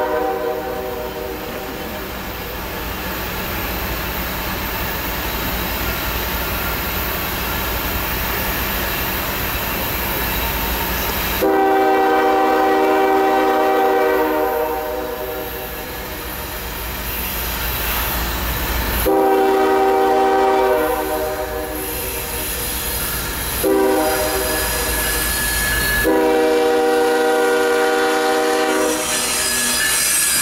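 GE ES40DC diesel locomotive's multi-chime air horn sounding the grade-crossing signal as the train approaches: two long blasts, a short one, then a long one. Between the blasts the locomotive's diesel engine gives a deep rumble. Near the end the locomotive draws level and the rush of its passing wheels rises.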